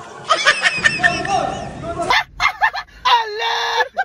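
Excited young voices shouting and shrieking. About halfway through, the sound cuts abruptly to another clip that holds one long, drawn-out wavering cry.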